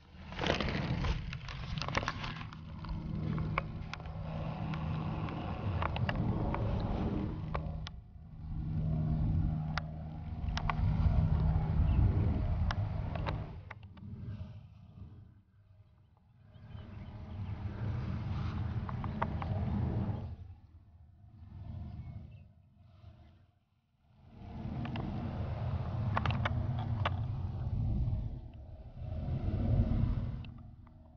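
Wind buffeting an outdoor camera microphone: a low rumbling noise that rises and falls in gusts, with short lulls between them and a faint low hum at times.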